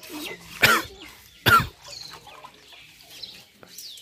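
A chicken squawking twice, loud and short, about a second apart, with faint bird chirps later.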